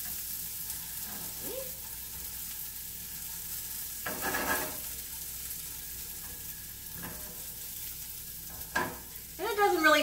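Diced patty pan squash and carrots sizzling steadily as they sauté in butter in a frying pan. A spatula stirs them, with a short scrape about four seconds in and light taps against the pan near the end.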